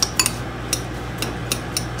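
Metal spoon clicking against the side of a bowl while stirring a sticky marshmallow and rice cereal mix, about eight sharp clicks at uneven intervals.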